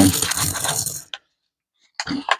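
A paper roll of copper Lincoln cents poured out onto a cloth: a dense clatter of pennies tumbling together for about a second, then one last clink.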